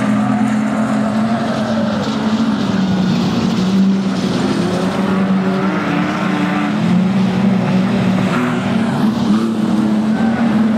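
Several street sedan race cars' engines running hard on the track, their overlapping notes rising and falling as the cars lap.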